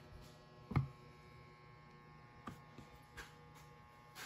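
Faint steady electrical hum in a small room, with a few soft knocks, the loudest just under a second in.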